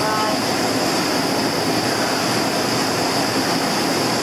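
Shop space heater running with a steady, even rushing noise and a high hiss.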